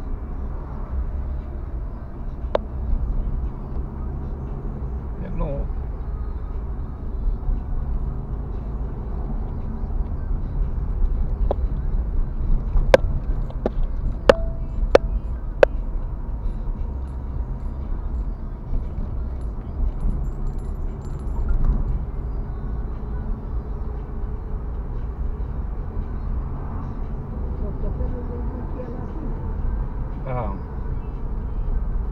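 Car driving, heard from inside the cabin: a steady low engine and road rumble, with a few sharp clicks about halfway through.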